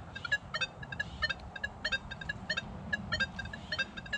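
Nokta Legend metal detector beeping: a quick, irregular run of short, high electronic beeps, all at the same pitch.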